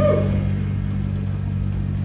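Live rock band: an amplified electric guitar chord held and ringing as a steady low drone, with hardly any drum hits, before the next chords come in.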